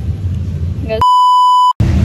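A loud, steady, high-pitched censor bleep lasting under a second, starting about a second in. It fully replaces the speech and background sound beneath it.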